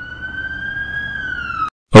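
Police car siren: one slow wail that grows louder as it rises in pitch, falls slightly near the end and cuts off suddenly.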